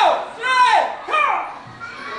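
A high-pitched, squeaky voice in short rising-and-falling syllables, three in quick succession, dying away about a second and a half in.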